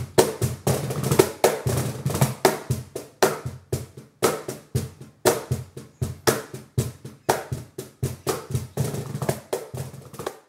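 Meinl wooden cajon played by hand in a steady groove of about four to five strokes a second. Deep bass strokes in the middle of the front panel mix with sharp slaps near the top edge that bring out the snare sound. The drum is heard unmiked, as it sounds in the room.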